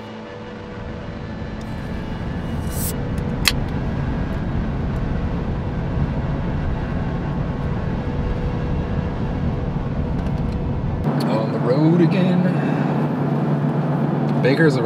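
Steady low road and engine rumble inside the cab of a moving Toyota vehicle, fading in over the first couple of seconds, with a single sharp click about three and a half seconds in. Near the end the deepest part of the rumble drops away and a voice is heard over the lighter cab noise.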